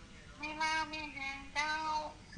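A higher-pitched voice, fainter than the man's speech around it, in two drawn-out phrases with fairly level pitch: the first about a second long, the second short, near the end.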